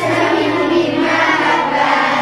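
A class of children singing together in chorus over accompanying music, voices steady through the whole stretch.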